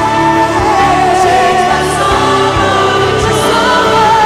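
Live contemporary Christian worship music: several voices singing together over a full band with drum kit and electric and acoustic guitars, drums keeping a steady beat.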